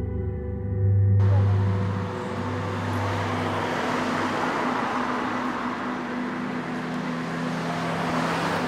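A low, sustained ambient-music drone that fades out over the first few seconds. About a second in, an even outdoor street ambience with road traffic noise comes in suddenly and carries on.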